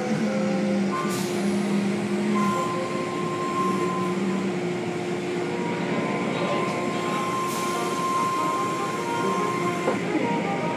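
Automatic tunnel car wash machinery running: a steady mechanical din of motors, spinning brushes and water spray, with a constant droning hum throughout.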